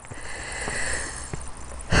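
Footsteps and camera-handling rustle from someone climbing a steep path on foot, a steady noise with a couple of faint knocks.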